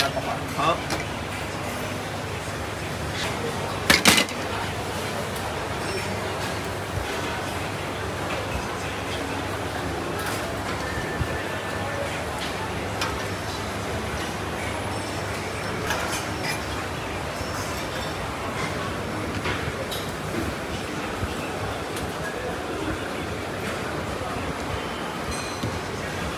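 Hawker-stall kitchen background: a steady rumble with a murmur of voices, a loud metallic clank about four seconds in, and scattered light clinks of utensils against steel pots and plastic containers.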